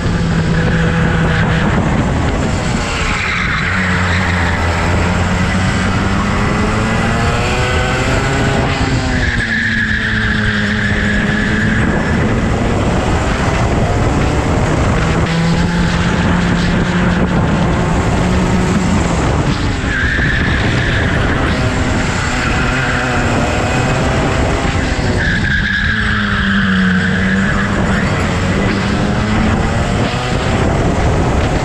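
Go-kart engine heard from on board, running hard and repeatedly dropping in pitch as the kart slows for corners, then climbing again as it accelerates out.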